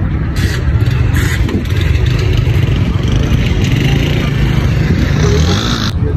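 Several small single-cylinder motorcycle engines running and being revved together, mixed with the talk of a crowd of riders.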